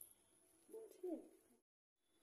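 Near silence with one short, faint, low call about a second in that falls in pitch; the sound then cuts out abruptly shortly before the end.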